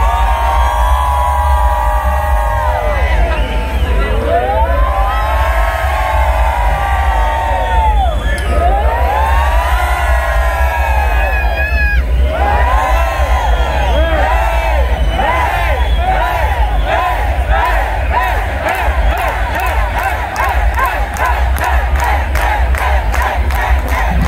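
Live rock band building up to a song: a pitched sound sweeps up and down in slow arcs, then in quicker and quicker pulses, over a steady low drone. The crowd shouts throughout.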